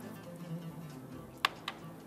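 Quiet background music of soft held tones. About one and a half seconds in come two light clicks, a quarter second apart.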